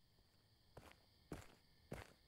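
Faint footsteps: three steps about half a second apart.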